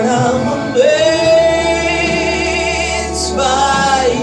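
Gospel singing with music; about a second in a voice holds one long wavering note for roughly two seconds before moving on.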